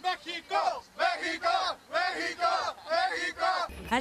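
A group of football fans chanting together, a loud rhythmic chant of shouted syllables on a steady beat that cuts off near the end.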